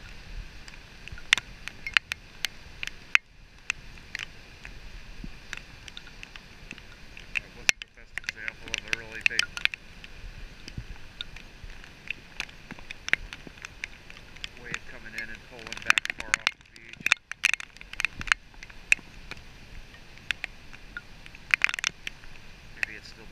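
Storm surf washing up a beach as a steady rush, with frequent irregular sharp clicks of raindrops striking the camera.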